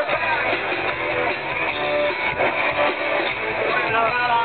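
A live band playing amplified music on a stage, heard from within the audience.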